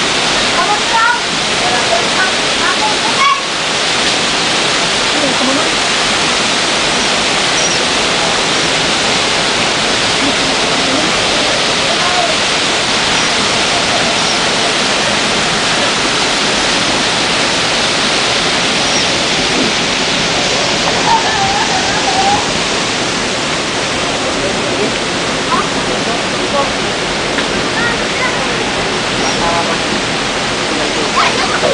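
Steady, loud rush of river water pouring over a concrete weir and churning in the white water below it.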